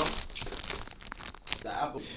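Plastic bread packaging and a thin plastic carrier bag crinkling and rustling as a packaged loaf is handled and pulled out of the bag, in a series of irregular crackles.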